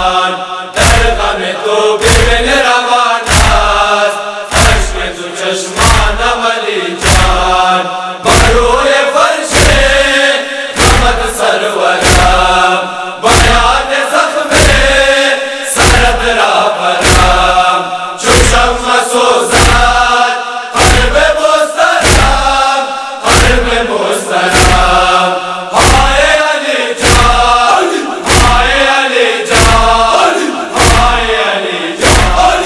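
A noha (Shia lament) chanted in Hazaragi/Persian over a deep, even beat that strikes a little faster than once a second, marking the rhythm of the lament.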